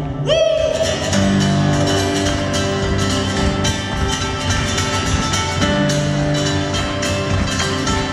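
Acoustic guitar strummed hard and fast through an instrumental passage of a live song, with sustained low notes under the strokes. A short cry that rises and falls in pitch sounds about half a second in.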